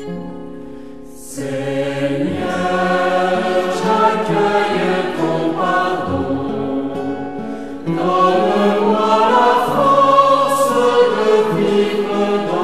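A choir sings a French church hymn with instrumental accompaniment. A held chord fades out over the first second, then the voices come in and grow louder, with a fresh, fuller entry about eight seconds in.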